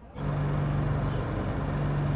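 An engine running steadily: a constant low drone over an even outdoor hiss, starting just after a brief drop-out.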